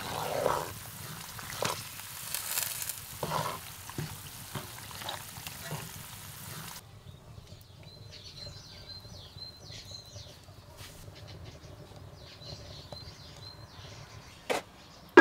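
Creamy gravy sizzling in a frying pan while a wooden spoon stirs it, with scattered scraping knocks. About halfway through, the sizzle cuts off abruptly, leaving birds chirping in short repeated calls.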